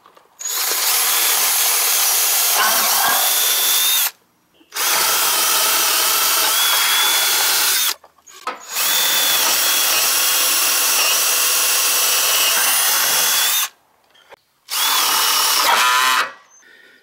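Ryobi ONE+ 18V cordless drill running a 5/16-inch twist bit through a wooden board, at a steady full speed. It runs in four long bursts with brief stops between them, the last starting near the end.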